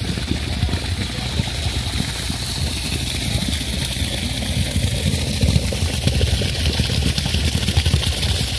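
An engine idling steadily, a continuous low rumble.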